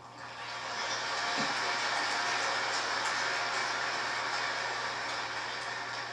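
Large indoor audience applauding, swelling over the first second, then holding steady and easing slightly near the end.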